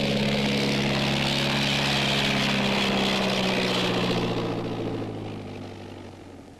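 Propeller aeroplane engine running steadily, then dropping a little in pitch and fading over the last couple of seconds as the aircraft draws away.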